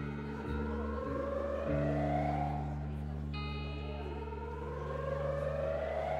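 Live rock band's quiet intro: sustained low notes held under an electric guitar run through effects, with a rising swell that repeats about every three and a half seconds.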